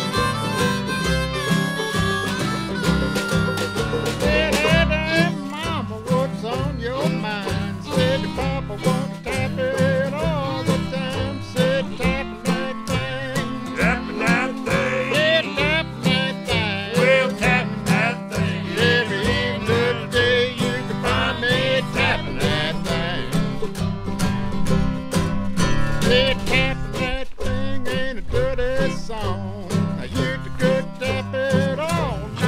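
Jug band playing an old-time instrumental tune: harmonica carrying the melody at the start, over strummed guitar and a washtub bass keeping a steady rhythm.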